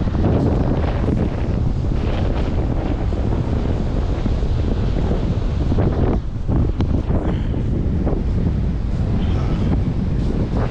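Strong wind buffeting the microphone in a steady low rumble, with surf breaking on the shore underneath.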